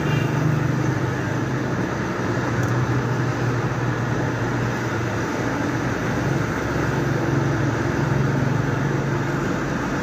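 A steady low mechanical drone with an even rush of noise over it.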